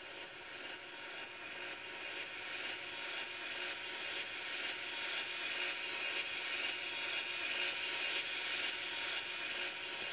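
Noise riser effect playing from FL Studio Mobile: a filtered, reverb-soaked white-noise hiss that swells steadily louder, a build-up for a DJ remix.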